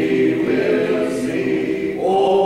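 A small mixed group of men and women singing a hymn together from hymnals, holding long sustained notes.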